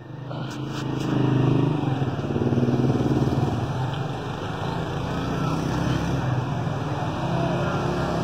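A motorcycle engine running on the street, swelling up over the first second or two and then staying loud and steady with small wavers in pitch, against general traffic noise.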